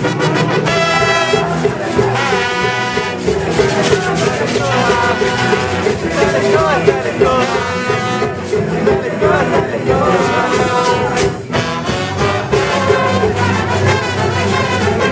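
Loud brass band music, trumpets and trombones playing a lively tune without pause, with crowd voices mixed in.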